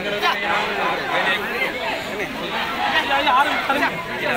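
A man speaking loudly, with other voices chattering around him in a crowd.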